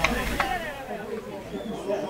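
Faint, distant voices of footballers calling on the pitch, with a brief tick about half a second in.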